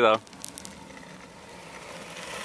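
A man's voice ends a word at the very start, then only faint steady outdoor background noise with a couple of light clicks.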